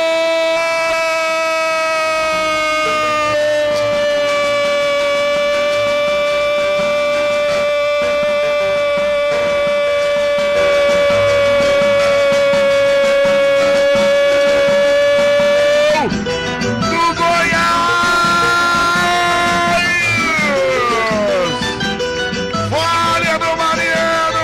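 A Brazilian radio commentator's drawn-out goal cry, "gooool", held as one long note for about sixteen seconds. After the note breaks off, music with a beat comes in, and a voice slides down in pitch twice near the end.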